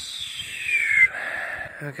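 A bird's call: one high, slightly rough note sliding down in pitch over about a second, trailing off into a lower rasp.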